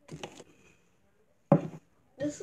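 Handling noise: a short rustling knock, then a sharp thump about one and a half seconds in as the cup and phone are moved.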